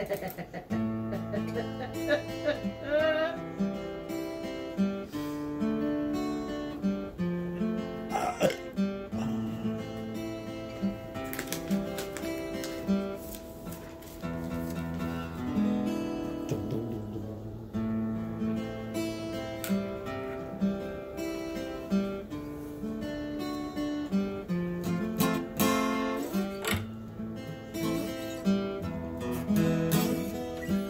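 Acoustic guitar playing an instrumental passage of chords and single notes over a repeating bass line, without singing.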